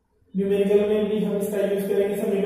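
A voice chanting a steady held tone, starting suddenly about a third of a second in.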